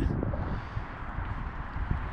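Wind rumbling on the camera microphone, a steady low buffeting noise outdoors between spoken phrases.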